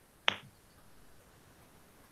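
A single sharp click about a quarter of a second in, then only faint steady background hiss from the microphone.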